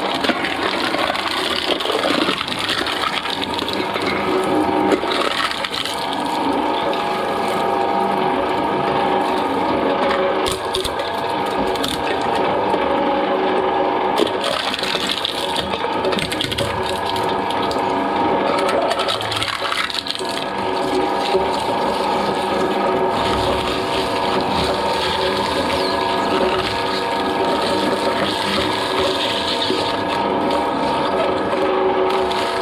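Twin-shaft shredder running, its toothed blades crunching and tearing aluminium drink cans over the steady hum of its drive. Short sharp clicks and knocks from the cans breaking come and go throughout.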